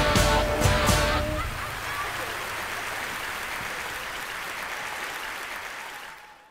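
A live rock band's last chord, with guitar and drum hits, ends about a second in. Audience applause and cheering follows, slowly softening.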